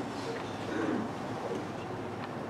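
Low, indistinct murmuring of voices with no clear words.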